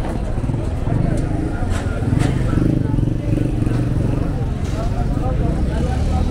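Busy street ambience: voices of passers-by and vendors talking over the steady running of road traffic, motorcycles and cars, with a few short clicks.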